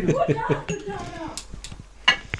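A person's voice talking for about the first second, then two short light clicks near the end.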